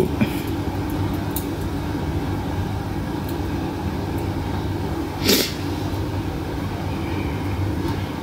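Steady low mechanical hum in the background, with a single sharp click a little after five seconds in.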